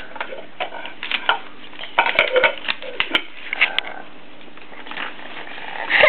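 Wrapping paper crinkling and crackling as a small child handles and unwraps a present: a run of crisp, irregular crackles and snaps, busiest in the middle.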